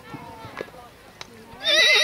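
A horse whinnying loudly with a quavering pitch, starting suddenly near the end, after a couple of faint hoof clicks.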